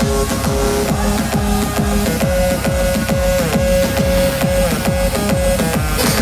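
Electronic dance music played loud over a festival sound system during a DJ set: a steady, even kick-drum beat under long held synth notes.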